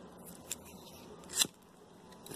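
Two short clicks against a quiet room, a faint one about half a second in and a louder one about a second later.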